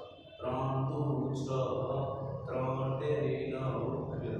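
A man speaking in a lecturing voice, apparently in Gujarati, after a brief pause about half a second in.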